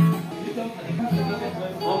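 Acoustic guitar being strummed: a loud strum right at the start dies away into a few softer ringing notes, and the playing picks up again near the end.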